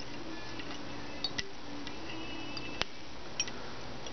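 A few light clicks of the metal bobbin tube tapping against the hook and dumbbell eyes as thread is wrapped in figure eights to lash the eyes to the hook. The two sharpest clicks come about a second and a half apart, over a low steady background.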